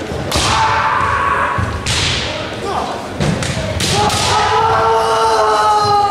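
Kendo bout sounds in a large echoing hall: several sharp cracks of bamboo shinai strikes and foot stamps on the wooden floor. Near the end comes a long, held kiai shout.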